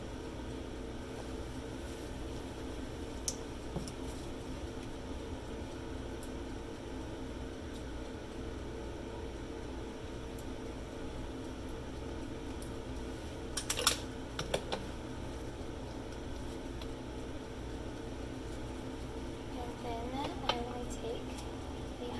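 Steady hum of a Stago Start 4 coagulation analyzer and lab room, with a few sharp clicks. The loudest moment is a quick cluster of clicks about two thirds of the way in, from a pipette being handled over the cuvettes.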